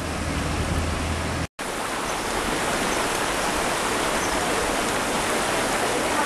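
Steady rushing and sloshing of street floodwater, an even hiss, with a low hum under it for the first second and a half. The sound drops out briefly about a second and a half in, then the same steady water noise resumes.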